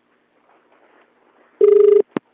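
Telephone ringback tone heard over a phone line: faint line noise, then a loud, low, steady tone with a fast flutter comes on about a second and a half in as the called phone rings.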